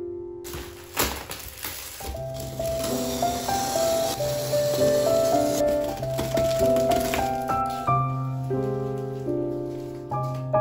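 Plastic stretch wrap crinkling and tearing as a cardboard-boxed standing desk frame is unwrapped, with a sharp snap about a second in, over soft background piano music.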